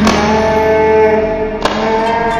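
A song's backing music: a held chord, with a sharp beat struck at the start and again about one and a half seconds in.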